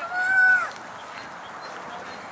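A single high-pitched shout held for about half a second near the start, typical of a spectator cheering on cross-country runners. Faint outdoor background follows.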